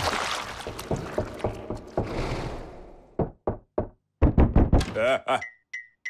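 Cartoon sound effects: a dense crackling clatter that fades away over about three seconds, then a few quick knocks on a door and a louder pounding. A short laugh comes near the end.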